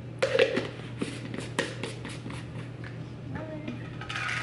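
Sharp plastic clicks and knocks as a powder scoop taps against its tub and a plastic shaker bottle while powder is scooped in. The loudest cluster comes just after the start, followed by scattered single taps.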